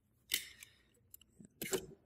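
A knife blade scraping into PVC pipe to cut a small notch. There is one short scrape about a third of a second in, a few faint ticks a little past the middle, and more scraping near the end.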